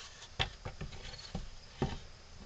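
Light knocks and clicks of wooden pieces bumping together as a carved wooden figure and its boards are handled and shifted in a bench vise, about five in all, the sharpest about half a second in and near the end.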